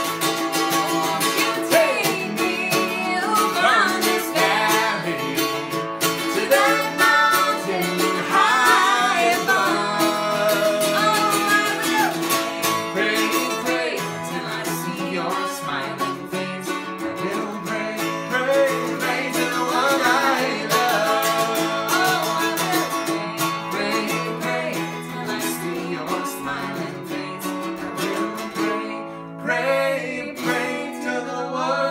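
Acoustic string instrument playing a folk song's wordless passage, steady strummed chords under a moving melody line, with a short drop in level near the end.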